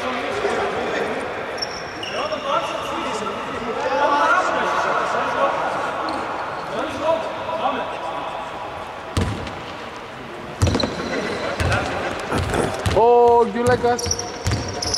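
A basketball bouncing several times on a hardwood court in the second half, with players' voices in the background.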